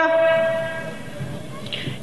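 The last syllable of a woman's amplified speech ringing on through an outdoor public-address system as one steady tone, fading away over about a second.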